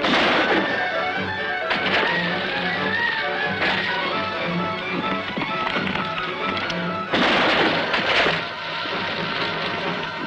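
Dramatic film score music, with sudden loud crashes cutting through it: one at the start, shorter ones about two and four seconds in, and a longer, louder one lasting over a second about seven seconds in.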